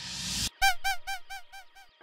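A sound-effect sample previewed in a music production program: a rising whoosh for about half a second, then a short honk-like call repeated about six times, roughly four a second, each fainter than the last, like an echo.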